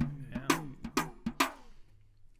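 A short phrase of sharp stick strokes on a drum, played with one stick while the other hand rests on the head, each stroke ringing briefly. The strokes fall about every quarter to half second and stop about a second and a half in.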